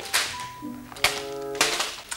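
A plastic crisp packet rustling as it is shaken out and tossed aside, with a sharp knock about a second in, over background music.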